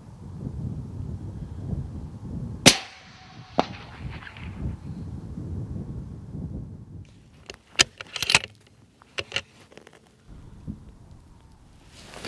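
A single scoped-rifle shot about three seconds in, the loudest sound, with a ringing tail and a fainter crack just under a second after it. Later comes a quick run of sharp clicks, and a low wind rumble sits under much of it.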